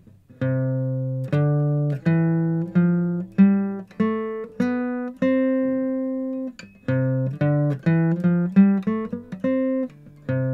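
Steel-string acoustic guitar picked one note at a time, playing the C major scale ascending in second position: a slow run of about eight notes rising an octave, the last held for about a second and a half, then the same scale again at a quicker pace.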